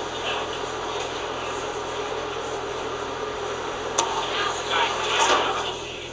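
Steady background hum and hiss with faint, indistinct voices, and a single sharp click about four seconds in.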